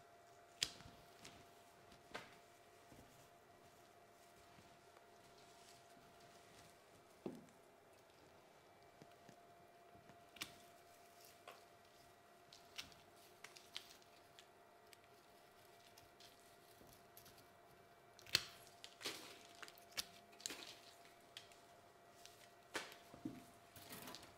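Pruning cutters snipping through Japanese black pine branches: a dozen or so short, sharp snips scattered through the quiet, coming closer together in the last few seconds, over a faint steady hum.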